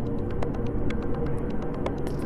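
Low, steady droning background music with a fast, even ticking pulse over it, the tension bed played under a timed quiz round while a contestant thinks.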